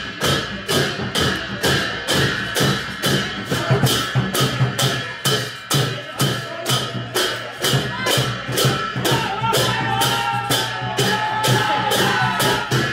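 Sakela dance rhythm played on a Kirati dhol (two-headed barrel drum) and jhyamta brass hand cymbals: steady cymbal clashes about three a second over repeating drum beats. Voices join in over the last few seconds.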